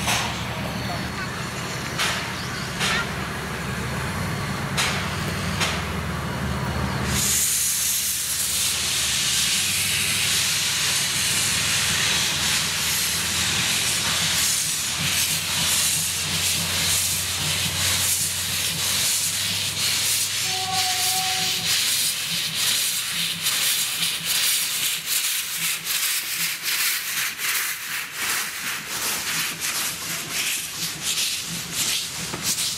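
Steam locomotive standing with a low steady rumble, then about seven seconds in a loud hiss of steam bursts out as it starts away and keeps hissing while it pulls out. A brief steady tone sounds a little past two-thirds of the way through, and near the end the passing carriages add rapid clicking.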